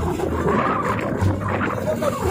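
Wind buffeting the microphone in irregular low rumbles, over the wash of choppy sea water along a small outrigger boat.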